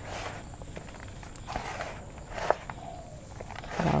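Hands mixing organic black potting soil with raw rice husk in a plastic tub: gritty rustling in a few bursts, with a small sharp click about two and a half seconds in.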